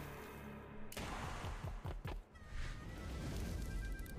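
An online slot game's background music and reel effects playing quietly, with a few soft held tones in the second half.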